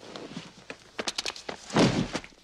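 Scuffle sound effects: a quick run of sharp knocks and clatters about a second in, then a heavy thud near the end.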